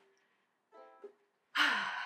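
A woman's breathy sigh about one and a half seconds in, falling in pitch, after a faint ukulele note fades out.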